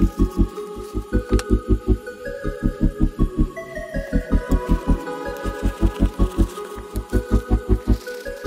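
Background music: a rapid pulsing low note, about six or seven beats a second, under sustained chords.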